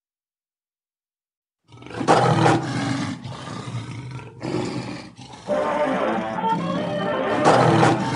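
Silence, then from about two seconds in a lion roaring over music, loudest at the start of the roar and again near the end.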